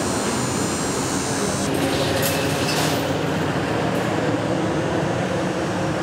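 Steady, unbroken rumble of idling vehicle engines with a constant low hum.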